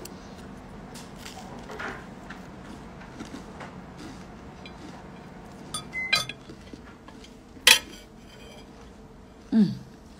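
Metal fork clinking against a plate while eating, with a few short clinks about six seconds in and one sharper, louder clink near eight seconds; a brief hummed 'mm' near the end.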